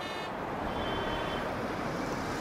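Steady street traffic noise: an even rush of passing vehicles.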